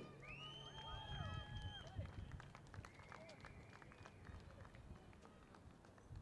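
Faint outdoor ambience with distant voices and scattered clicks. A high whistle-like tone rises and holds for about two seconds near the start, and a lower one holds a second and a half around the middle.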